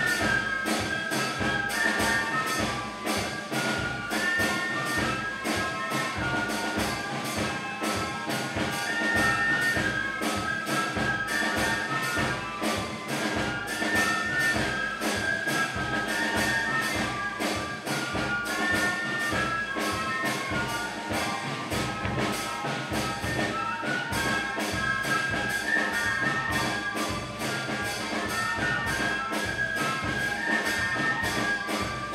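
Brass band music with a steady beat: trumpets and other brass playing a melody over percussion.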